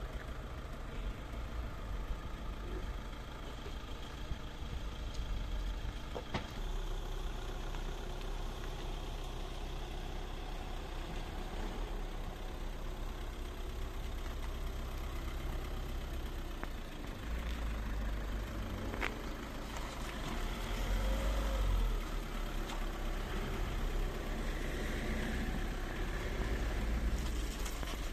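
A car engine idling steadily, with a few faint clicks over it.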